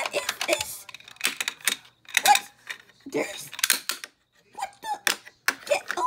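Indistinct, unintelligible speech in bits and pieces, mixed with sharp clicks and crinkles from fingers handling and picking at a small toy package to open it.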